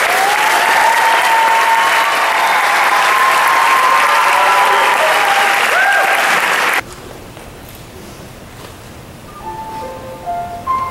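Audience applause in a school auditorium, loud and steady, with a few shouts or whistles on top. The applause cuts off abruptly about seven seconds in. After a quieter pause, a piano begins playing single notes near the end.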